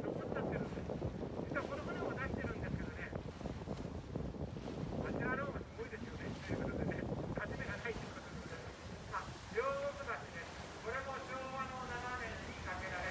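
A river sightseeing boat under way: a steady rumble of motor and rushing water, with wind buffeting the microphone. Voices speak in short bursts over it.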